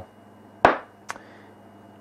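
A short sharp knock about half a second in, then a lighter click about a second in: small parts being handled at a workbench.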